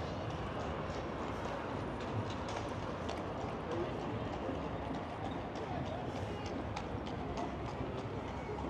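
Steady outdoor crowd ambience of indistinct distant voices, with scattered light clicks and knocks.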